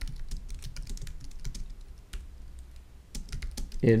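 Typing on a computer keyboard: a quick run of keystrokes with a short pause about two seconds in, then more keystrokes.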